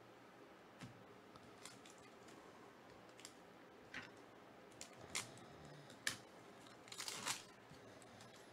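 Trading cards and a foil card-pack wrapper being handled: a scattering of light crackles and clicks, with a short run of crinkling about seven seconds in.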